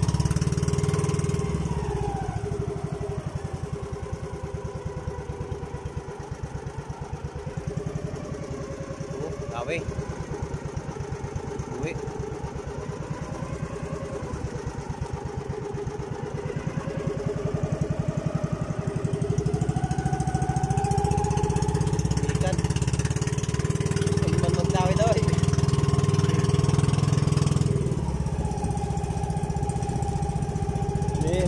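Outrigger boat's (bangka's) engine running steadily under way with a fast, even beat. It runs softer in the first half, then louder and a little higher in pitch from just past halfway, with water splashing off the hull and outrigger.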